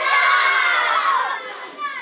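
A class of young children shouting and cheering together at the end of a birthday song. The shouting is loud and drops away about a second and a half in.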